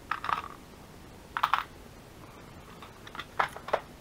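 Small metal charms clicking and clattering against a clear plastic compartment organizer as they are picked through by hand: a few short clatters near the start, about a second and a half in, and a quick run of clicks near the end.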